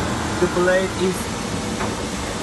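Steady mechanical noise of running machinery, with a man's voice briefly over it about half a second in.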